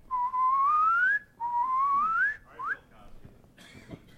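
A man whistling two rising glides, each about a second long, that climb from low to high and then jump back down to start again, followed by a short, quick upward swoop. It imitates the sawtooth frequency sweep of an FMCW radar chirp.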